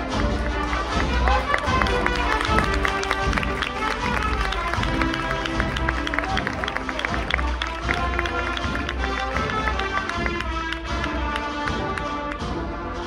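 A procession band playing a march: brass holding sustained chords over a steady beat of snare and bass drum.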